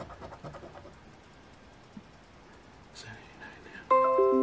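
A coin scratching the latex off a paper scratch-off lottery ticket, faint and intermittent. Near the end a loud, ringing musical chord of several notes starts suddenly.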